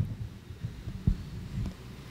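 Low thuds and shuffling as a congregation sits down on wooden pews, several bumps with the loudest about a second in.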